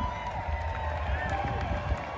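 Outdoor concert crowd just after the song ends: nearby voices and a general crowd din, with a few short whoops.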